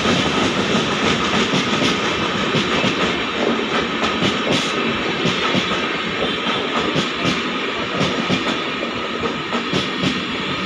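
Express train's passenger coaches running through at speed on the adjacent track: a loud, steady rumble with the clickety-clack of wheels over rail joints and a thin steady whine, easing a little toward the end.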